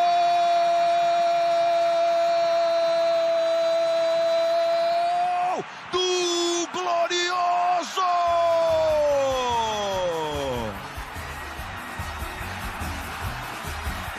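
A TV football commentator's drawn-out goal cry, "Gol!", held on one high pitch for about six seconds. It breaks off a few times, then slides down in pitch and fades about ten seconds in.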